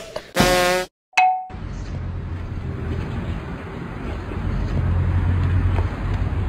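A short buzzing tone about half a second in and a bright ding about a second in, like editing sound effects marking a cut, then steady outdoor background noise with a low hum.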